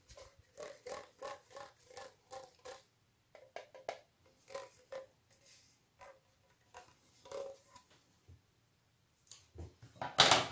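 Faint finger taps on a DIY neodymium planar tweeter panel, each tap ringing briefly with the same tone: the resonance of the freshly glued foil-and-metal-plate assembly. The taps come about three a second at first, then scattered and irregular.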